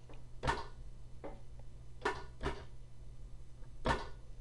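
Keyboard keys being pressed to enter notes: about five separate short clicks, spaced irregularly, over a faint steady low hum.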